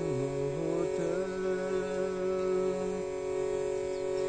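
A man chanting wordlessly over a steady drone. His voice slides down in the first second, holds a long low note, and drops out about three seconds in, leaving the drone alone.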